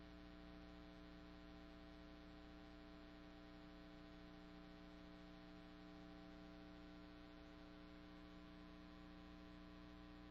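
Near silence: a steady electrical hum with no other sound.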